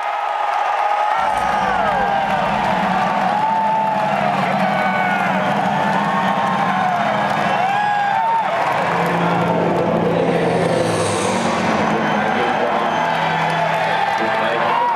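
Large arena rock-concert crowd cheering, yelling and whistling, with a low steady note held underneath from the stage starting about a second in.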